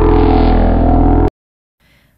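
Short synthesized transition sting: a dense sustained chord with a heavy low end, loud, which cuts off abruptly a little over a second in.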